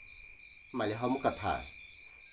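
Night insects trilling steadily at one high pitch, with a man's voice breaking in for about a second in the middle.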